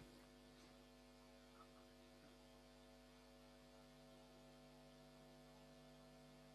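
Near silence carrying a steady electrical mains hum of several constant tones, with a faint click about one and a half seconds in.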